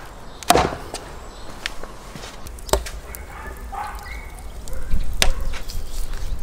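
A heavy blade chopping through raw meat and bone on a wooden tree stump: three sharp strikes, the first and loudest about half a second in, then one near three seconds and one about five seconds in.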